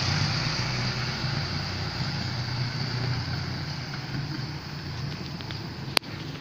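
Motor vehicle engine running steadily, with road and wind hiss from travelling along the street, slowly getting quieter. A single sharp click at the very end.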